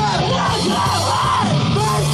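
Rock band playing live: distorted electric guitars, bass and drums, with a shouted vocal over them.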